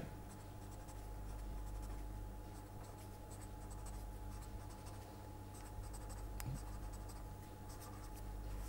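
Green felt-tip marker writing on paper, a run of faint short stroke sounds as letters are drawn, over a low steady hum. There is one sharp click about six and a half seconds in.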